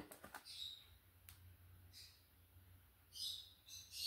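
Near silence with faint handling of tarot cards: a few light clicks as the cards are laid down, then brief, soft rustles now and then.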